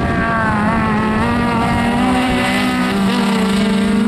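Autocross 'specials' race car engines running hard at high revs, the engine note steady with a slight wavering in pitch as the throttle is worked.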